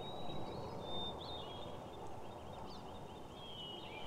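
Faint open-air background hiss with thin, high chirping calls from small birds.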